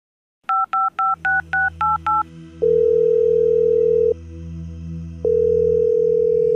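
A phone number being dialled: seven quick two-note keypad beeps, then the ringing tone of the call, two long steady tones with a pause between.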